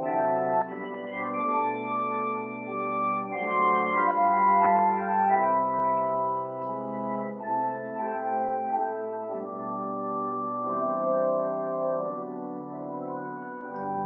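Organ playing a hymn tune through in slow, sustained chords, one verse as an introduction for the congregation to learn the melody before singing.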